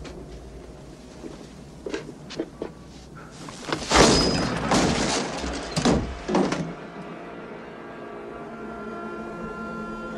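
A few sharp knocks about two seconds in, then a loud crashing clatter of several impacts lasting about three seconds. Low sustained music comes in near the end.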